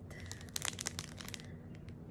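Faint crinkling and clicking of a small clear plastic bag as it is handled between the fingers, mostly in the first second and a half.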